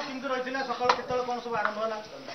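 Voices talking without transcribed words, with a single sharp knock or click just under a second in.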